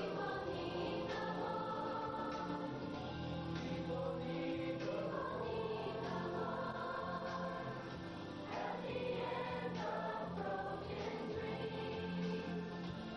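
Youth choir singing a song together.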